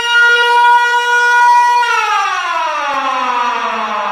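Emergency vehicle siren sounding one long steady note, then winding slowly down in pitch from about two seconds in.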